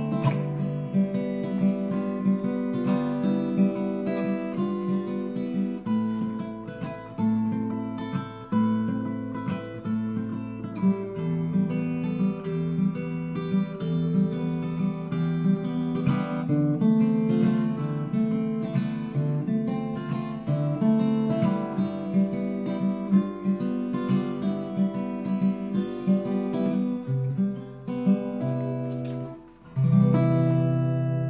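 Martin OM-1 acoustic guitar played solo, chords and picked notes ringing over a shifting bass line. Near the end it drops away briefly, then a fresh loud chord is struck.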